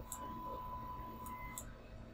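Three faint computer mouse clicks over low room noise, with a faint steady high-pitched tone through the first second and a half.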